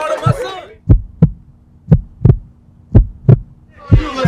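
Heartbeat sound effect: deep thumps in double beats, about one pair a second, four pairs in all, over a faint steady hum. A voice cuts off just before the first beat.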